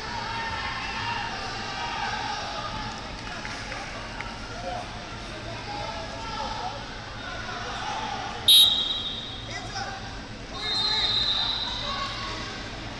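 Chatter of many voices across a large hall, with a short, loud referee's whistle blast about two-thirds of the way through and a second, longer whistle tone near the end, signalling the start of a wrestling period.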